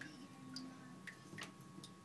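Faint, irregular plinks of water dripping in a toilet bowl, about five in two seconds, over a faint steady hum.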